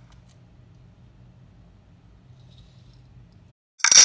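Faint low hum of room tone that cuts off abruptly about three and a half seconds in. Just before the end, a sudden loud clatter and rustle as the plastic ruler and roll of double-sided tape are handled on a glass tabletop.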